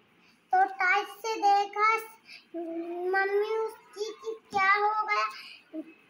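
A young girl's high voice in a drawn-out, sing-song delivery, with one long held rising note in the middle.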